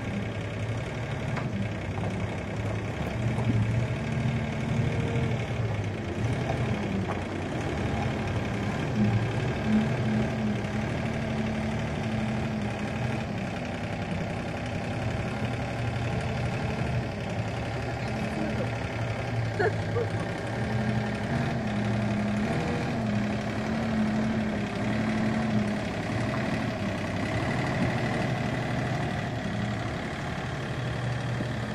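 Kramer 5035 compact wheel loader's diesel engine running as the machine works and manoeuvres, its level rising and falling several times with the load.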